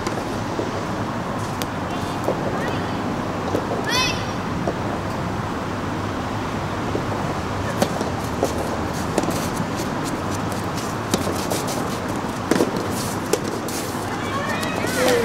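Soft tennis rally: the soft rubber ball is struck sharply by a racket about eight seconds in and again near the end, over steady outdoor background noise. A brief high voice call sounds about four seconds in.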